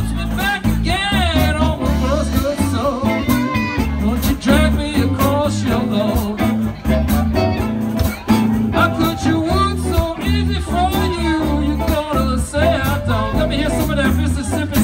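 Live electric blues band playing an instrumental stretch: electric guitars and drums keep the groove while an amplified harmonica plays bending, wavering lead lines.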